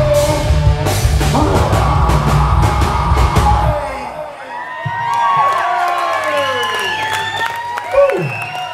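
Live rock band with distorted guitars, bass and drums playing out the end of a song, stopping abruptly about four seconds in. The crowd then whoops and yells.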